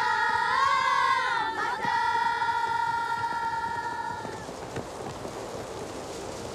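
Several high voices singing together in harmony, sliding in pitch and then holding one long note that fades out about four and a half seconds in, leaving a faint hiss.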